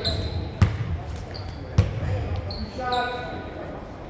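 A basketball bounced twice on a hardwood gym floor, about a second apart, with the sharp squeak of sneakers on the court and voices echoing in the large hall.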